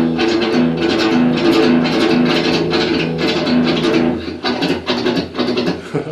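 Electric guitar with f-holes, picked quickly in a down-up pattern on open strings with no left-hand fretting, so the same few pitches repeat. The right-hand pattern of a speed lick goes on evenly, then becomes looser and quieter about four seconds in.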